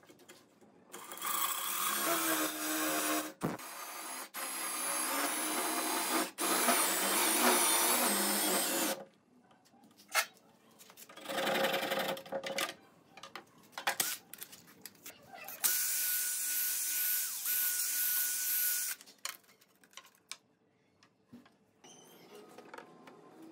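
Makita cordless drill boring into a clamped hardwood block, running in three long bursts with pauses between. The motor whine wavers in pitch in the first run and holds steady in the last.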